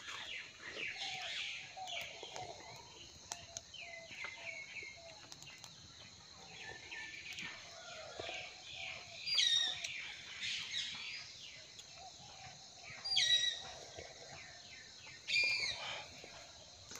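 Birds chirping and calling outdoors, with three louder, falling calls about nine, thirteen and fifteen seconds in.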